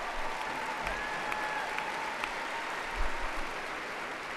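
Large rally crowd applauding steadily.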